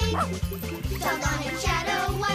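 Bouncy children's background music with a steady bass line, over which a cartoon dog barks.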